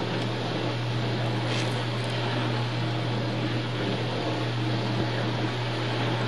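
A steady low hum over a constant hiss, with no distinct events.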